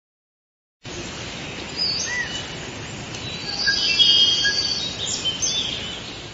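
Forest ambience: several birds chirping and whistling over a steady hiss, starting suddenly about a second in and fullest around the middle.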